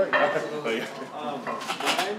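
Several sharp clinks and knocks, most of them in the second half, over people talking in the background.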